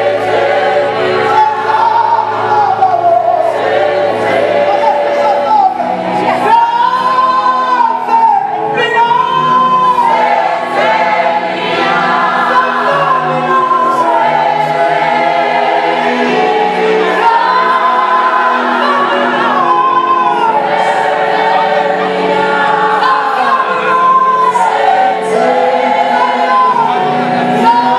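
A choir singing a hymn, several voices in harmony with long phrases that rise and fall.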